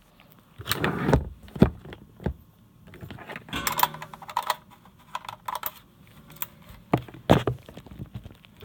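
An irregular series of small sharp clicks, taps and short scrapes from a camera body and lens being handled: the lens with its chipped bayonet adapter going onto the camera and its controls being worked.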